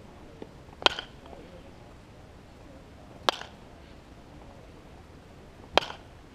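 Baseball bat hitting a pitched ball, three sharp cracks about two and a half seconds apart as the batter takes successive swings in batting practice.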